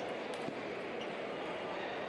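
Table tennis balls clicking off bats and tables, a few clicks in the first second, over the steady murmur of voices and play at neighbouring tables in a large hall.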